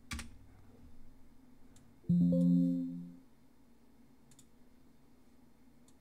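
A single key click, then about two seconds in a computer alert chime: one steady electronic tone lasting about a second. It is a warning dialog sounding as Excel opens a file too large for its workbook.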